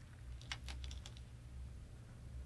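Faint clicking of go stones as a player's fingers take a black stone from the wooden stone bowl: a few light clicks about half a second to a second in.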